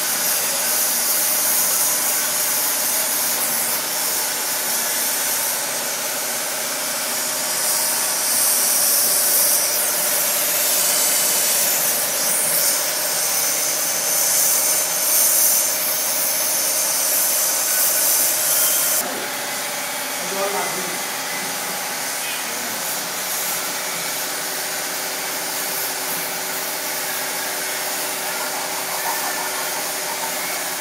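Gas torch burning with a steady loud hiss as its flame heats bronze metalwork. The hiss cuts off suddenly about two-thirds of the way through, leaving a quieter steady hum.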